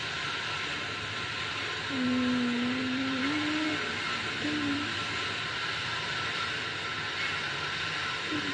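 A person humming, holding one low note for about two seconds that rises near its end, then a short second note, over a steady hiss.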